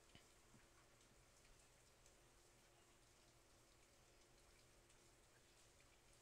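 Near silence: faint room tone with a steady low hum, and one small click just after the start.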